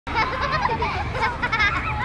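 High-pitched children's voices chattering and squealing, over a steady low hum.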